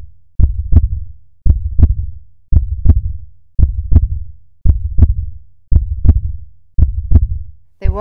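Heartbeat sound effect: a steady lub-dub, seven double thumps about a second apart.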